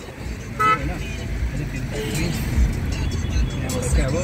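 A short, single vehicle horn toot about half a second in, heard from inside a moving car's cabin over the low rumble of its engine and the road in city traffic.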